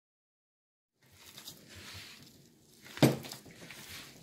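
Silence for about the first second, then hands squishing and kneading soft dough in a mixing bowl, with one sharp knock about three seconds in.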